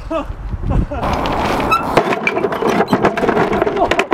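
A man's voice calling out and laughing, with a few short knocks early on.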